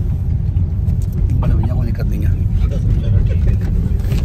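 Steady low rumble of a moving car's engine and road noise heard inside the cabin, with passengers' voices talking quietly through the middle of it.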